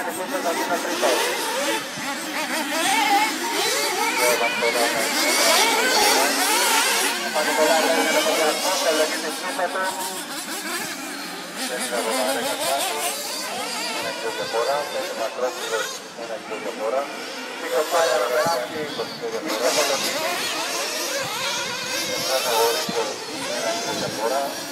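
Several 1/8-scale nitro buggies' small two-stroke glow engines whining around a dirt track. Their pitch rises and falls over and over as they rev and lift off. A voice talks over them.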